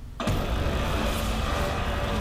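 Film trailer sound effect played over speakers: a sudden loud rumbling noise starts about a quarter second in and carries on steadily.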